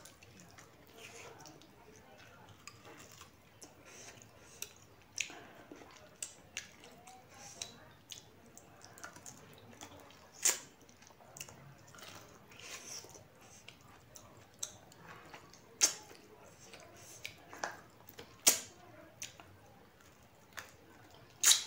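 A person chewing a mouthful of beef and rice, with wet mouth noises and sharp lip smacks every few seconds. The loudest smacks come about ten, sixteen and eighteen seconds in.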